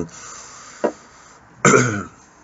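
A man's non-speech vocal sounds: a soft breathy exhale, a brief voiced grunt about a second in, and a louder throat-clearing sound near the end.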